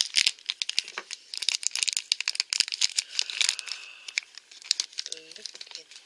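Small plastic toy wrapper crinkling and tearing as it is opened by hand: many quick crackles and clicks, thinning out after about four seconds.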